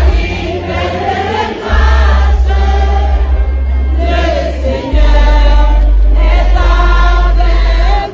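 A group of voices singing together over music with a loud, heavy bass. The bass drops out for about the first second and a half.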